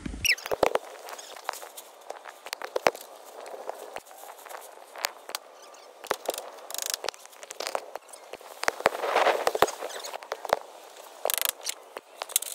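Plastic roof tarp being handled, rustling and crackling, with many sharp taps and clicks at irregular intervals and a louder rustling stretch about nine seconds in.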